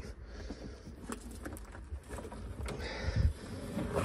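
Faint handling noise in a car boot: scattered light clicks and rustles, with a few dull knocks about three seconds in.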